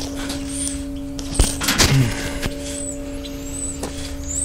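Bumps, knocks and rustling of a clip-on lavalier microphone being handled and clipped to a shirt, a few sharp knocks between about one and four seconds in, over a steady low hum, with faint high chirps of birds.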